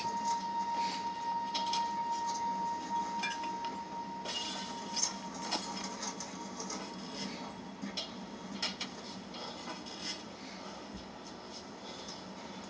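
Film soundtrack playing through a TV's speaker with no dialogue: a steady high tone for about the first four seconds, then scattered light clicks and ticks over a constant low hum.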